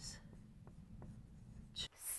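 Dry-erase marker writing on a whiteboard, faint strokes with a few light ticks of the tip as letters are written.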